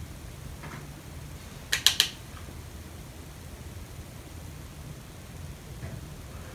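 Handling of a hand-held eyeshadow palette: three quick, sharp clicks close together about two seconds in, over a low steady hum.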